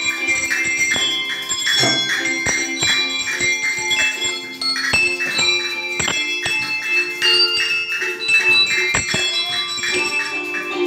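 A children's ensemble of colour-coded handbells playing a tune: bells struck one after another, each note ringing on and overlapping the next.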